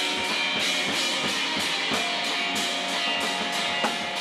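A rock band playing live: guitar and keyboard over drums keeping a steady beat of about three hits a second.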